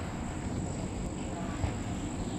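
Crickets trilling steadily at night, a continuous high-pitched tone, over a low rumbling noise.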